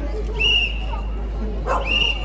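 Two short, high-pitched whimpering cries like a dog's whine, one about half a second in and one near the end, over the murmur of a crowd.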